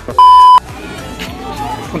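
A loud, steady single-pitch test-tone beep, the kind played over TV colour bars as an edit transition, lasting under half a second near the start, over background music.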